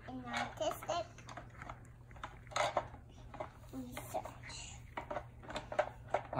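Short bits of a small child's voice, with scattered small clicks and rustles from hands working a painted egg carton and pipe cleaners, over a steady low hum.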